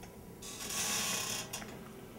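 A brief rustle lasting about a second, with a few faint clicks around it.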